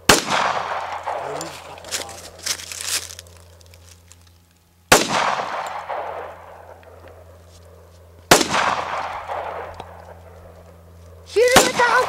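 Semi-automatic pistol fired four single shots a few seconds apart, each sharp crack followed by a long, fading echo.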